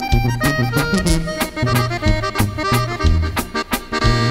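Accordion and tuba band playing an instrumental passage of a corrido: the accordion plays a melodic run over a stepping tuba bass line, with regular drum beats keeping time and no singing.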